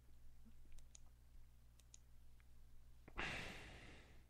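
A few faint clicks, some in pairs, over a low steady hum, then about three seconds in a loud breathy exhale into the microphone that fades out.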